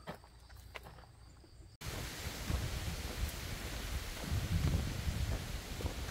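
Near silence for the first two seconds, then a sudden cut to steady outdoor noise: wind on the microphone with irregular low rumbles as the hiker walks along a road.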